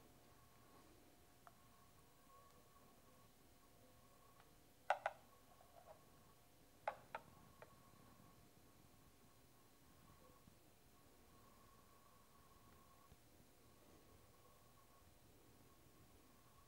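Near silence: room tone with a faint steady hum, broken by a few light clicks, two about five seconds in and two about seven seconds in.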